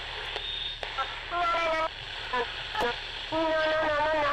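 An FM radio being tuned across the dial: hiss between stations, broken by brief snatches of voices as each station is passed.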